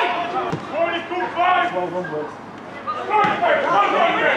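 A football being kicked during play: a sharp thud about half a second in and another about three seconds in, among players' shouts on the pitch.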